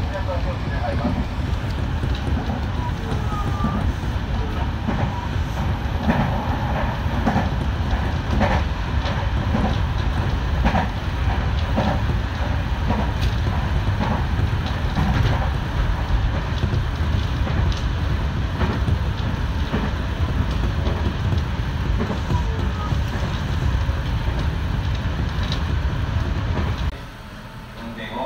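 Nankai electric commuter train running, heard from inside the driver's cab: a steady low rumble of wheels and running gear with many sharp clicks scattered through. Near the end the noise drops off suddenly to a much quieter background.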